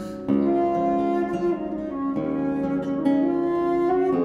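Baroque transverse flute (traverso) playing a slow melody in held notes over plucked theorbo chords.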